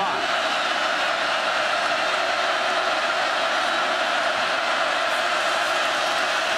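Football stadium crowd noise: a loud, steady din of many voices held at one level without a break, as the home crowd makes noise on a third-down play.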